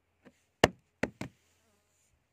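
Four short sharp knocks in just over a second. The first is faint, the second is the loudest, and the last two come close together.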